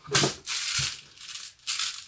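Airsoft high-capacity G36-style magazine rattling with its loose BBs as it is taken off the gun and handled, in three short bursts.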